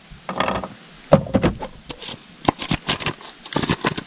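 A black plastic hand grinder used to crush boilies and pellets being handled: a string of short clicks and knocks as its toothed halves are knocked together, turned and opened.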